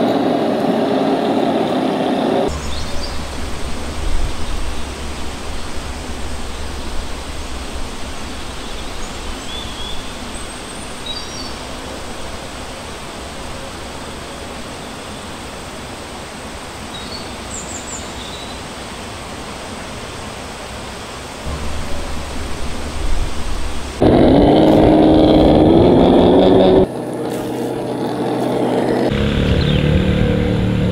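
The whine of a remote-control toy car's small electric motor at the start. Then comes a long quieter stretch of outdoor ambience: a steady low hum and noise, with a few brief bird chirps. About 24 s in, a loud motor-like whine rises in pitch for about three seconds.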